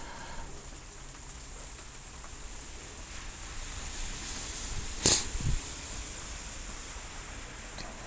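Steady hiss of rain falling. About five seconds in there is a brief sharp knock, with a softer low thud just after it.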